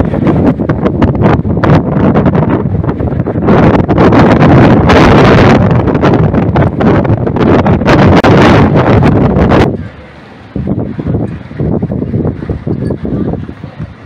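Wind buffeting the camera microphone in loud, gusty blasts that fall away sharply about ten seconds in, leaving weaker gusts.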